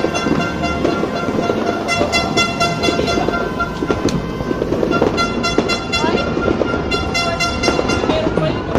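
A horn toots in long blasts of about a second, four times, over a dense continuous crackling of New Year fireworks and a handheld sparkler stick spraying sparks.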